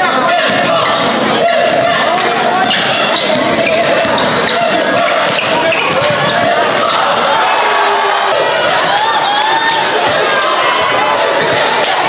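Basketball being dribbled on a gym floor, with repeated sharp bounces, under the constant chatter and calls of players and spectators.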